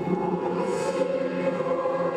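Music of sustained choir-like voices holding chords, starting abruptly, with a brief hiss about a second in.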